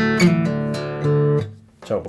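Acoustic guitar: a few picked notes, then a chord struck about a second in that rings briefly and is damped, leaving a short quiet gap.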